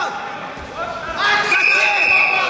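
Dull thuds of wrestlers' bodies hitting the mat during a takedown, with voices shouting in a large hall. The shouting grows louder about halfway through, and a long steady high-pitched tone is held over it near the end.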